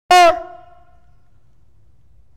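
A man's voice gives one short, loud, shouted syllable with a slightly falling pitch, cutting in suddenly from silence and then dying away in the hall's echo.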